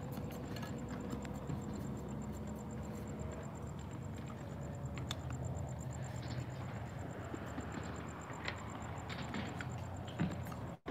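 Tennis ball being hit back and forth in a slow rally: a few faint, short knocks of ball on racket and court, several seconds apart, over a low steady rumble.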